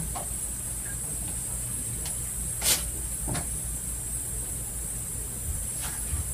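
Steady background hiss and low hum, with two brief sharp clicks near the middle.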